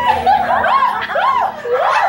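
People laughing hard in quick rising-and-falling peals, about three a second.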